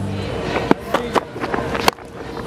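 A few sharp clicks and knocks over a low stadium background, ending near the end with the crack of a cricket bat striking the ball.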